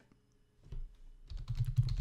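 Typing on a computer keyboard: a quick run of keystrokes that starts about two-thirds of a second in and grows denser towards the end.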